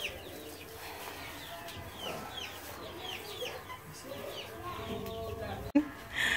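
Young chickens peeping: a steady run of short, high chirps, each falling in pitch, about two or three a second. A sharp knock comes near the end.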